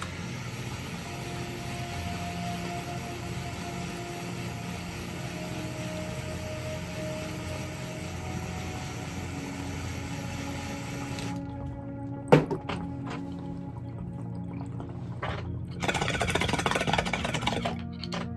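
Butane torch flame hissing steadily while it heats the Lotus vaporizer, cut off abruptly about eleven seconds in as the heat is taken away. A single sharp click follows, then bong water bubbling loudly for about two seconds near the end as the hit is drawn.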